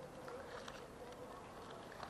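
Quiet room tone during a pause in speech, with a faint steady hum.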